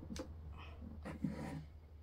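Quiet plastic handling as a flavour pod is slid onto an Air Up bottle's lid, with a small click shortly after the start, over a low steady hum.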